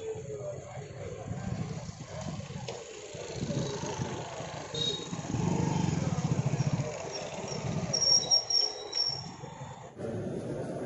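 Street traffic with motorcycle engines running close by, a low rumble that is loudest around the middle. A few short high squeaks come near the end.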